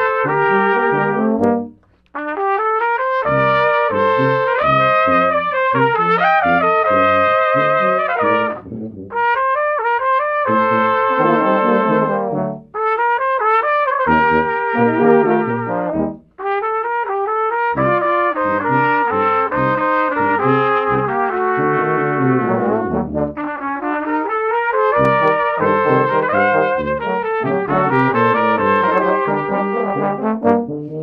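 A brass quintet with trumpets, trombone and tuba playing a piece live. The melody moves in quick phrases, with brief breaks about two seconds in and twice more near the middle.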